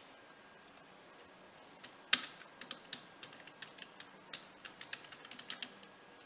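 Faint, irregular clicking of computer keyboard typing, sparse at first and busier over the last four seconds, with one sharper click about two seconds in.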